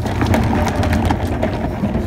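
Low, steady engine rumble of an old pickup truck moving slowly over a gravel drive, with loose rattles and knocks as it jolts along.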